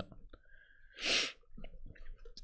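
A person's single short, breathy rush of air at the microphone about a second in, without voice in it.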